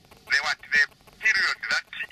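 A man's voice speaking in short, broken phrases that are not clear as words, with pauses between them.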